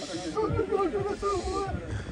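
A man talking in a raised voice, the words not made out, with bursts of hiss.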